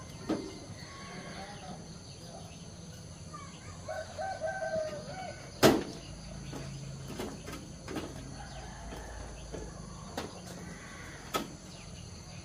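A few sharp knocks and clacks from things being handled, the loudest about halfway through. A chicken calls briefly a little before it.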